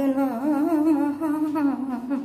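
A woman humming one long, unbroken phrase of a tune, its pitch wavering gently up and down.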